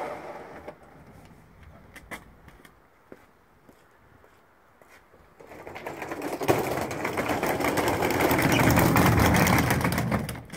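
Suitcase wheels rattling over brick paving: a fast, dense clatter that builds from about five seconds in and is loudest near the end, with a few separate knocks of luggage handling before it.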